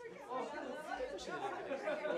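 Several people talking over one another in lively chatter, a mix of women's and men's voices.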